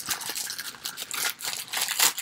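Thin clear plastic packaging bag crinkling and crackling in a quick, irregular run as it is handled and pulled open by hand.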